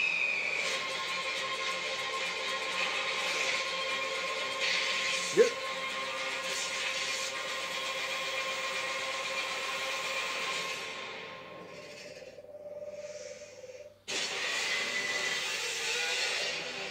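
A film trailer's soundtrack playing: music with long held notes under a layer of noisy sound effects, with one short sharp hit about five seconds in. Near the end it fades down, cuts out for an instant and comes back in at full level.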